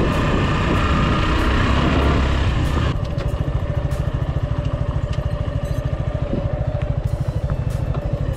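Suzuki Gixxer's single-cylinder motorcycle engine running as the bike rides over a dirt track. It is louder for the first three seconds or so, then settles into a lower, steady beat of firing pulses.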